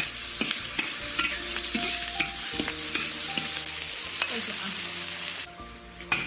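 Chili, ginger, garlic and scallion sizzling in hot oil in a large wok, a metal ladle scraping and clicking against the pan as they are stir-fried. The sizzle drops off sharply near the end.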